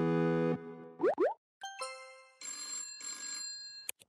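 Intro jingle with cartoon sound effects: a held synthesizer chord cuts off, then come two quick rising boing-like glides, a burst of chiming tones, and a shimmering bell-like ringing in two stretches, ending on a click.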